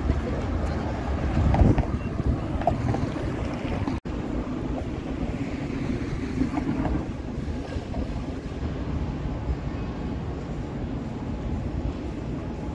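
City street ambience: a steady low traffic rumble with wind noise on the microphone, and a louder swell about a second and a half in. The sound drops out for an instant about four seconds in.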